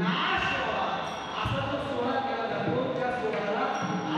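A man's amplified voice calling out in a sung, declaiming delivery, echoing in a large hall, with a couple of low drum thumps.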